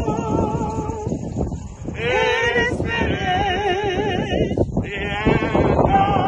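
Hymn singing: slow, long-held notes with a heavy wavering vibrato, breaking briefly about two seconds in and again near five seconds.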